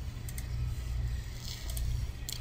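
Steady low hum of background noise with a few faint clicks.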